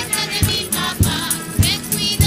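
A folk group singing together to a strummed guitar, over a steady low beat.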